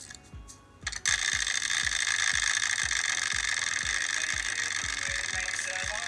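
Background music with a steady low beat about twice a second. About a second in, a loud, steady rattling hiss comes in over it and holds.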